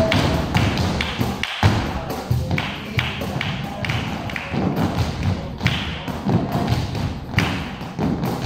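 Flamenco shoes striking a dance-studio floor as a group of dancers do footwork together: a run of thuds and sharp taps, several a second, unevenly spaced.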